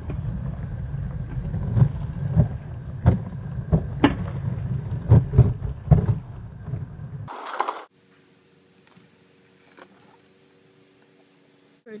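Skateboard wheels rolling over pavement: a steady low rumble broken by sharp clacks. It stops abruptly about seven seconds in, leaving only a faint steady hum.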